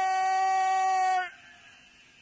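A voice holds one long, high, steady note that cuts off suddenly about a second in, leaving only a faint hiss.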